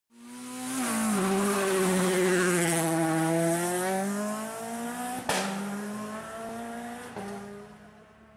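Logo-intro sound effect of a race car: a steady engine note with tyre squeal that drops in pitch about a second in, then slowly climbs again. A sharp hit comes a little past the middle and a smaller one near the end as it fades.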